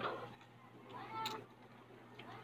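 A short, high-pitched call that rises in pitch, about a second in, over a low steady hum.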